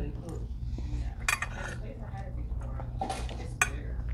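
Metal forks and spoons scraping and clinking against ceramic dinner plates, with a few sharp clinks: one about a second in and two near the end.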